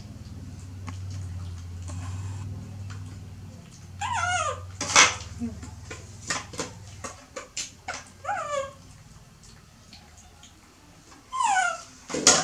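Baby macaque giving high-pitched calls that slide steeply downward, three times: about four seconds in, about eight seconds in, and near the end. Scattered light clicks and taps come between the calls, over a low steady hum in the first half.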